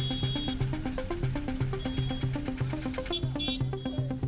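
Background music: an electronic track with a quick, steady, repeating bass-note pattern.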